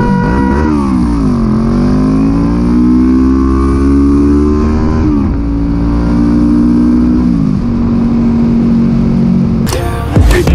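Motorcycle engine heard from the rider's helmet camera, pulling up through the gears. Its pitch climbs for a few seconds, drops sharply at a gear change, holds, then drops again at another shift and settles to a steady cruise. A steady high note cuts off about half a second in, and music breaks in just before the end.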